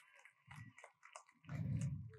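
A faint pause with a few soft clicks, then about one and a half seconds in a brief low, throaty vocal sound from a man close to the microphone: a choked breath.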